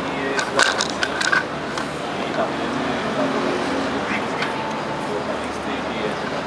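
Indistinct voices over steady background noise, with a quick run of sharp knocks in the first second and a half.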